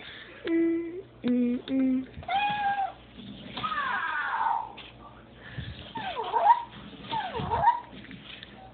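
Toy robot cat meowing about four times, one call falling in pitch and two dipping and rising, after three short hummed notes from a person at the start.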